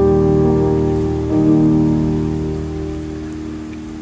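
Instrumental introduction played on a piano-like keyboard: held chords, with a new chord about a second in that slowly dies away.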